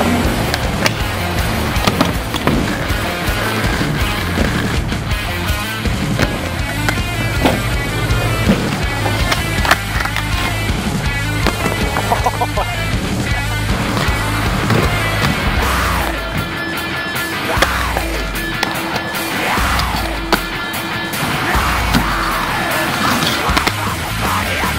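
Loud rock music soundtrack over inline skate wheels rolling on concrete, with sharp clacks along the way.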